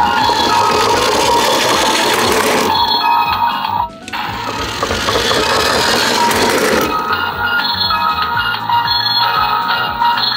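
Battery-powered toy ambulance's electronic siren sounding through its small speaker, set off by a roof button: a steady tone at first, a brief break about four seconds in, then a tone that steps back and forth between two pitches in the later seconds.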